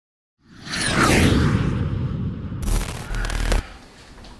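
Intro sound effect: a swelling whoosh with falling pitch sweeps, then a second, harsher burst that cuts off suddenly about three and a half seconds in.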